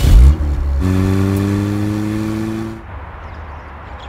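Car engine revving as the car pulls away: a loud low burst right at the start, then a steady engine note that slowly climbs in pitch for about two seconds and cuts off suddenly.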